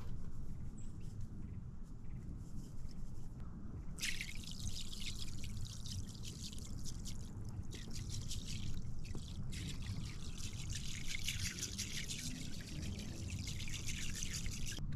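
Grey pond-sealing material poured from a glass jar into pond water, a fine hissing trickle and patter on the surface that starts about four seconds in and breaks briefly near ten seconds.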